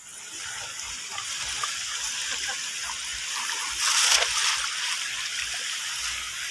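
Shallow river water splashing and trickling around people wading, with one louder splash about four seconds in.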